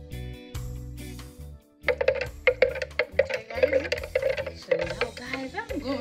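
Background music with a steady bass beat, joined about two seconds in by a busier vocal line over the beat.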